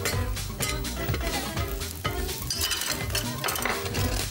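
Kitchen utensils clinking and scraping against pots and pans, with short knocks throughout, while a pancake sizzles in a frying pan. Background music plays underneath.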